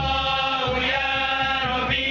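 A group of men chant a selawat in unison, holding long sung lines that glide between notes. Kompang frame drums are hand-struck underneath in a quick, steady beat.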